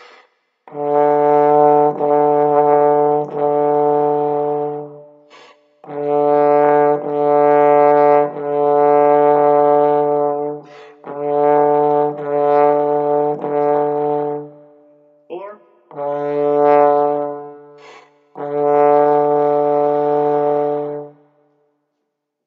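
Trombone playing one low note, concert D, over and over in a steady rhythm of half and whole notes, with short pauses for breath between phrases.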